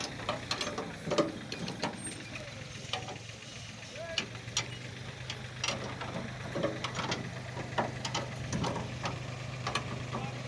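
A steady low engine hum, as of a motor idling, that becomes more even from about four seconds in, with scattered sharp clicks and knocks over it.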